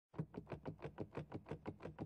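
A quiet, rapid, even series of soft knocks or ticks, about six a second.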